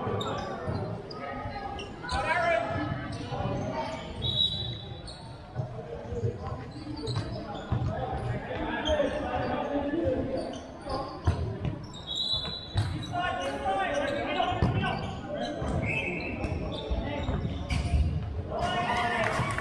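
Indoor futsal game in a large, echoing sports hall with a wooden floor: repeated ball kicks and bounces, distant player shouts and chatter, and a few brief high squeaks.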